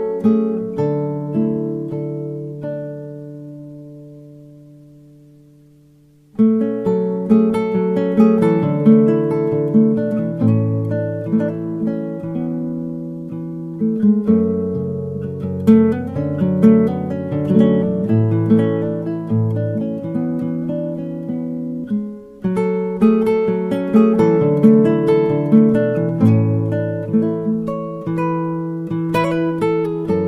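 Background music on acoustic guitar, plucked notes and chords. A chord rings out and fades over the first few seconds, then the playing starts again about six seconds in and carries on to the end.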